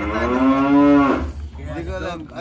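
A man's voice stretching out the word "corn" into a long, loud, held vowel for about a second. The pitch rises slightly and then falls away at the end.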